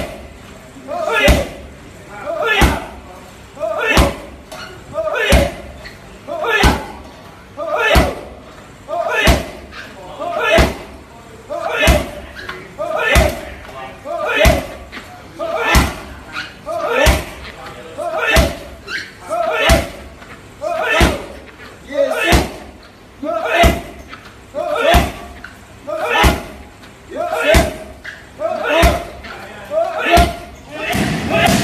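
Muay Thai roundhouse kicks smacking into a leather heavy bag held by a partner, one hard strike about every 1.3 seconds in a steady rhythm, about two dozen in all. Each strike comes with a short, sharp vocal exhale from the kicker.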